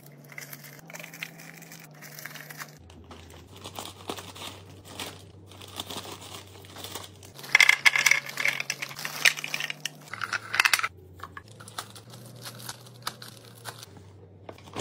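Wrapped candies dropped into a clear plastic bin, their wrappers crinkling and the pieces clicking against the plastic. About halfway through, a louder run of crinkling and clatter as foil-wrapped candy kisses are poured in from their plastic bag.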